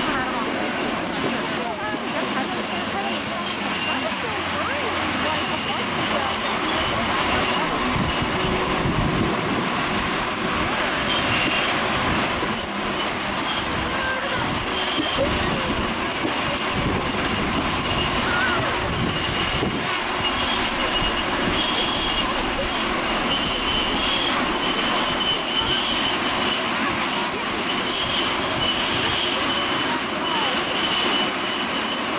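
Outdoor crowd chatter, many voices at once with no clear words, running steadily, with thin high squealing tones coming and going over it.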